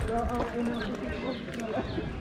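Footsteps on loose gravel and dirt, irregular light impacts, with people's voices talking over them.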